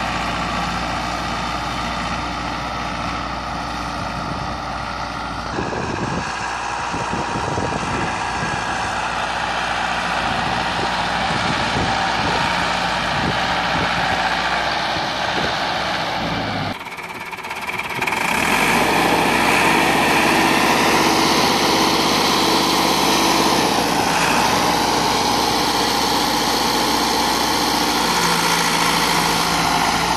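Massey Ferguson 385 tractor's four-cylinder diesel engine running steadily while pulling a spring-tine cultivator through tilled soil. The sound dips briefly just past halfway, then comes back louder.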